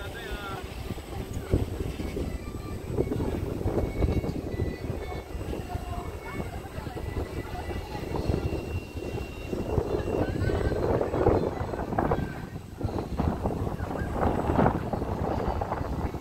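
Outdoor ambience: wind rumbling on the microphone, with faint voices of people in the distance.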